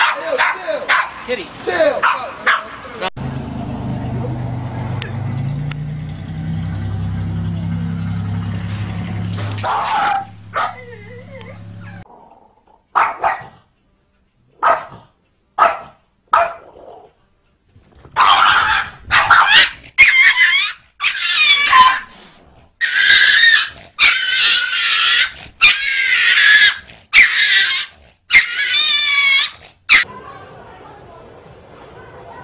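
Small terrier-type dogs barking and yapping at a cat for the first few seconds. In the last twelve seconds comes a run of loud animal cries with wavering pitch, about one a second.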